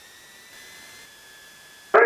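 Faint hiss with a thin, steady high-pitched electronic whine on the cockpit intercom audio feed, between radio and intercom transmissions.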